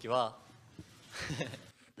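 A man speaking in two short, halting phrases with a pause between them.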